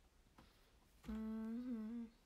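A young woman's closed-mouth hum, a short 'mm' held on one steady pitch for about a second, starting about halfway in, with a small wobble near the end.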